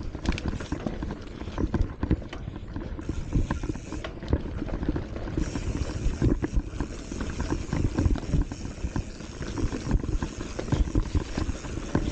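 Hardtail mountain bike rattling down a rough dirt singletrack: the tyres rumble over the ground, and irregular knocks and clatter come from the frame and drivetrain over bumps.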